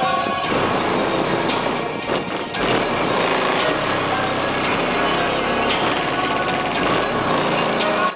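Bass-heavy music played loud through a car stereo's two 15-inch subwoofers on a 3000-watt amplifier, heard from outside the car against the side window. It runs steady and dense throughout.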